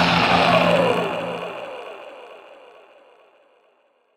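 Distorted black metal guitars ringing out on a final chord and fading away to silence over about three seconds: the end of a song.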